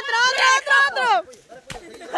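Onlookers shouting and whooping with rising and falling cries for about the first second, then a single sharp thump near the end.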